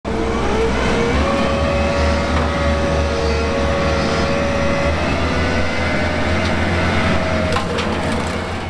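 Bobcat Toolcat 5600's diesel engine running steadily while driving its hydraulic brush-cutter attachment, with a steady whine that steps up a little about a second in.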